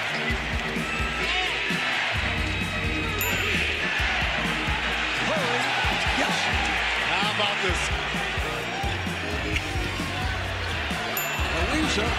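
Basketball game audio: sneakers squeaking and a ball bouncing on the hardwood court amid arena crowd noise, under background music with sustained bass notes.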